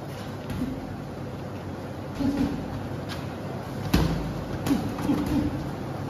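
A few sharp slaps of gloved punches landing in boxing sparring, the loudest about four seconds in, over a steady background noise.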